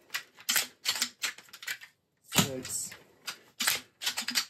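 An AEA HP Max .357 PCP air rifle being cycled and fired from a 3D-printed stick magazine. Several sharp metallic clicks of the cocking lever and the magazine advancing come first, then the sixth shot of the seven-shot magazine goes off, about two seconds in, as the loudest sound. More lever clicks follow near the end.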